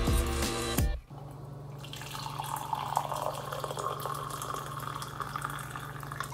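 Background music for about the first second, then an espresso machine's pump humming steadily while the shot runs into a ceramic cup with a continuous liquid trickle.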